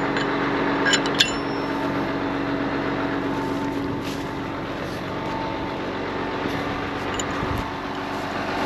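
Tractor engine idling steadily, with a few sharp metallic clicks in the first second or so from the steel locking pin being handled in the cultivator's depth-adjustment hole plate.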